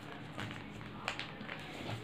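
Faint rustling and a few soft ticks of folded origami paper as hands press the pieces of a paper ninja star more tightly together.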